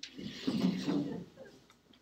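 A short breathy human vocal sound that is not a word, made close to a handheld microphone and lasting about a second.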